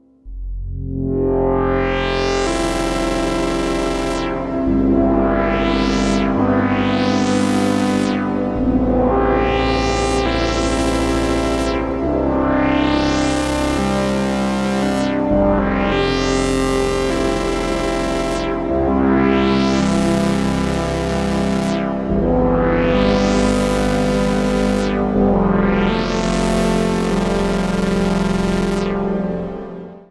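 Moog Grandmother analog synthesizer playing sustained three-note chords with reverb. All the notes share one envelope. About ten chords follow one another, each brightening as the filter opens and then darkening, with the bass note changing between them.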